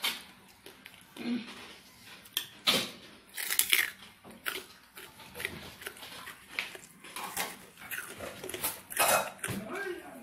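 Crunching of crispy fried pork cracklings being bitten and chewed, heard as irregular sharp crackles about once a second.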